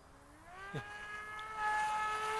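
Electric RC plane's motor and propeller whining in flight: the pitch rises as the throttle is opened about half a second in, then holds steady while the sound grows louder.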